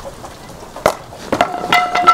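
A baseball bat hits a pitched ball with a sharp crack about a second in. It is followed by a few quicker knocks and clatters, the last of them leaving a steady ringing tone.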